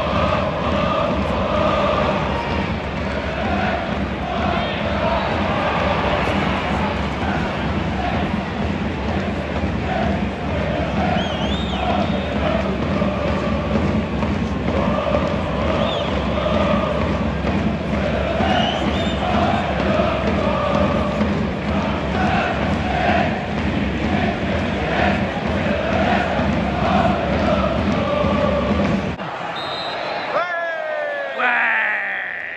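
Football crowd singing and chanting in the stands: a dense, steady mass of voices that cuts off suddenly about a second before the end.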